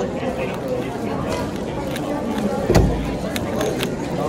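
Angstrom Tornado V3 Pioneer 3x3 speedcube being turned rapidly during a solve, a run of quick plastic clicks over background chatter from a crowded hall. A single dull thump, the loudest sound, comes about three-quarters of the way through.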